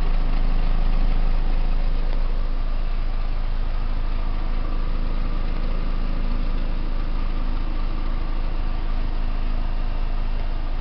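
2004 Vauxhall Astra convertible's engine idling steadily, a low, even hum with no change in speed.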